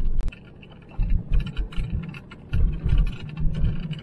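Car driving over a rough unpaved track, heard from inside the cabin: from about a second in, irregular low bumps and rattles ride over the engine noise.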